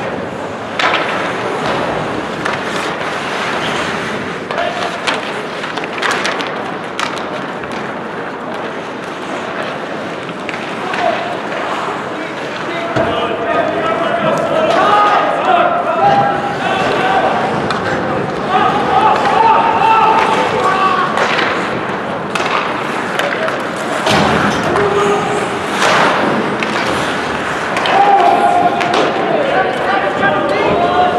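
Ice hockey play echoing in an arena: skates scraping the ice, with sharp knocks of sticks, puck and bodies against the boards at scattered moments. Voices call out over it from about halfway through.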